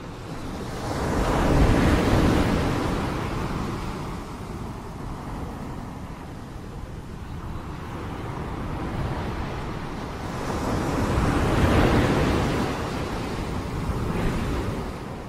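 Ocean surf: waves washing in, swelling to a peak about two seconds in and again near the end.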